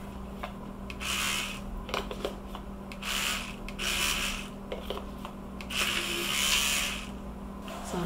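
Electric toothbrush scrubbing coloured cocoa butter into the cavities of a plastic chocolate mold, in three bursts of bristle scrubbing over a steady low hum.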